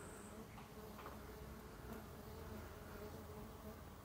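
Faint, steady buzzing of Tetragonula hockingsi stingless bees around their opened hive, a soft wavering hum.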